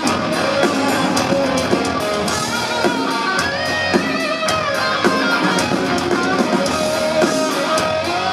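Live rock band playing an instrumental passage with no vocals: distorted electric guitars over bass and a drum kit on a steady beat, with a guitar line sliding up and down in pitch.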